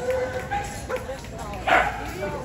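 A dog barks once, sharply, about three-quarters of the way through, over steady crowd chatter.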